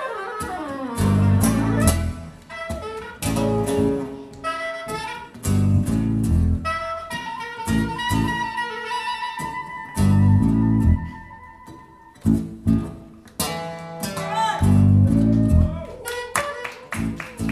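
Live jazz band playing: a soprano saxophone melody over acoustic and electric guitars, with loud accented ensemble chord hits every second or two. Around the middle the saxophone holds one long, wavering note.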